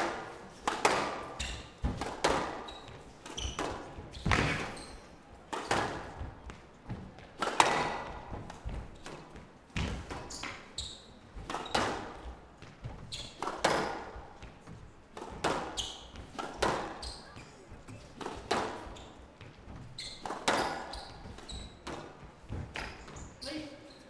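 Squash ball being struck by rackets and hitting the walls of a glass court in a fast rally: sharp hits about once a second, each with a short echo in the hall.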